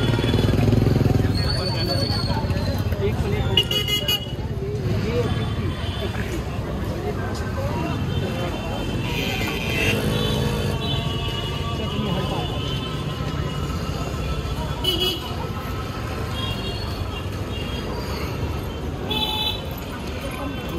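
Busy city street traffic of scooters and cars, with short vehicle-horn honks about four seconds in, again around fifteen seconds, and near the end. Background voices chatter throughout.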